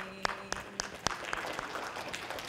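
Scattered clapping from a few people in the audience: a handful of sharp claps in the first second that thin out and fade.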